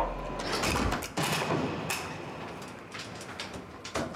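Several metallic clicks and clunks as a human centrifuge's capsule is opened after a run, with a low machine hum that stops about a second in.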